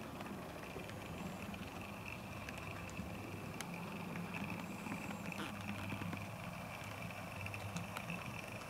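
Model steam locomotive running along the track: a steady low motor-and-gear hum with a thin high whine over it, and a few sharp clicks from the wheels on the rails.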